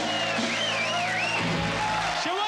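Live band music with guitar, its held low notes ending just before the close, with wavering high pitched voices over it.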